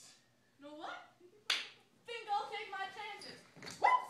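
Staged fight: a sharp slap-like smack of a stage-combat hit about a second and a half in, and another sharp hit near the end, with short grunts and cries from the performers around them.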